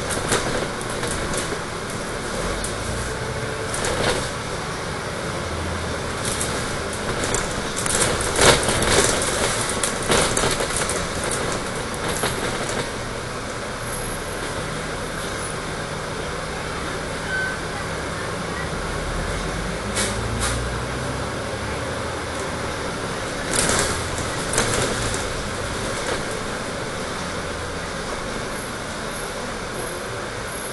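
A Dennis Trident 12 m double-decker bus driving along, heard from inside on the upper deck: steady engine and road noise with short knocks and rattles now and then, the loudest about eight to ten seconds in.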